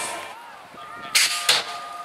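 BMX start gate sequence: a steady electronic start tone begins just before the middle and is held to the end, with two short, sharp hissing bursts about a third of a second apart in the middle of it, typical of the pneumatic gate releasing.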